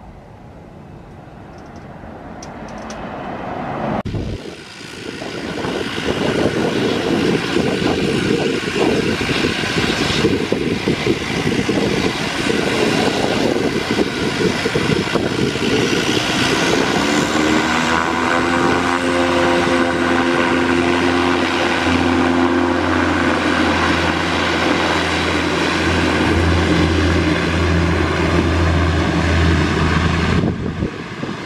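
A distant twin-turboprop airliner climbing away, growing louder, then a cut to an Embraer EMB-120 Brasilia whose twin turboprops run loud on the runway. About halfway through, the engine note rises in pitch as the propellers spool up to takeoff power, then holds steady with a deep drone as the aircraft begins its takeoff roll.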